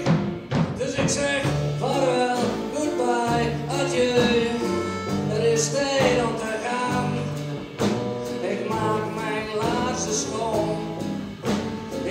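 A live band playing an instrumental passage with no words sung: acoustic guitar, bass and drums, with an accordion, the bass moving to a new note about once a second under a pitched melody line.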